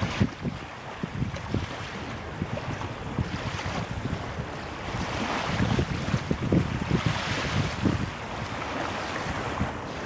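Wind buffeting the microphone over the wash of waves on open water, the gusts loudest about halfway through.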